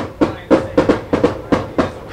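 A rapid, uneven series of about nine sharp clicks over two seconds.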